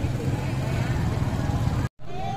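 Motorcycle engines running at low speed close by, a steady low rumble, cut off abruptly just before the end.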